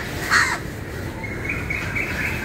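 A crow gives one short, harsh caw just after the start. A thin steady high tone comes in about halfway through, over a steady background hiss.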